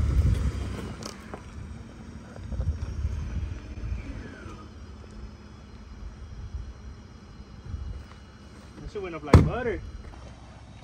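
Ford F-150 pickup crawling slowly over rocks: low engine and tyre rumble that swells and fades. A single sharp bang about nine seconds in is the loudest sound, followed by a brief voice exclamation.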